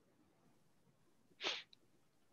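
Near silence broken about one and a half seconds in by a single short, sharp breath noise from a man.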